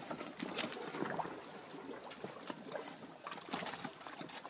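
Hardwood logs and branches knocking and rustling as they are fitted into a stacked bonfire pile: scattered light knocks over a faint background.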